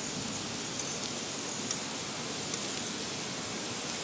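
Steady hiss of thin potato slices frying in olive oil on a stainless-steel teppanyaki griddle, with a few light clicks of metal tongs against the plate as the slices are turned.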